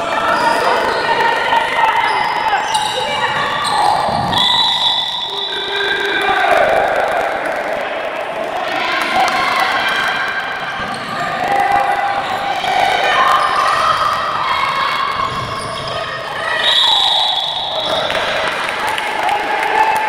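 Handball bouncing on a wooden indoor court during play, with voices of players and spectators throughout, echoing in the hall.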